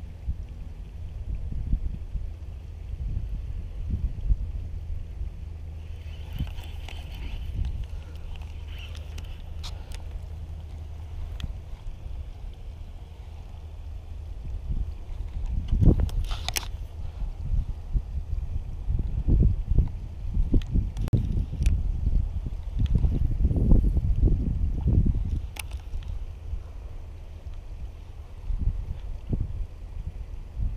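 Wind buffeting the camera microphone, a low rumble that comes in gusts and grows stronger in the second half, with a few sharp clicks.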